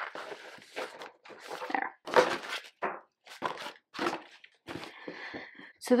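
Paper and ribbon rustling in irregular bursts as a small folded book of mixed-media papers is handled and tied shut with a ribbon.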